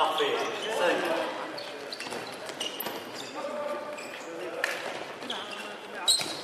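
A handball bouncing on a sports-hall floor amid players' calls and shouts, with short clicks and squeaks scattered through, echoing in the large hall.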